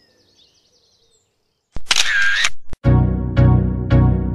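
Near silence, then just before halfway a camera shutter sound effect: a click, a short whirr and a second click. Music with a steady beat starts right after it.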